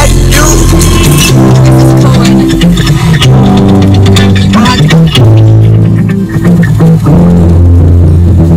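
Loud music with a heavy bass line and guitar playing on a car stereo inside the cabin.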